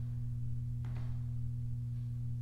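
A steady low hum with a few fainter steady tones above it, and a faint short noise about a second in.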